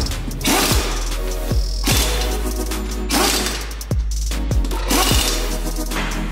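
Electronic background music with a steady deep bass, a kick drum and repeated swelling cymbal-like sweeps.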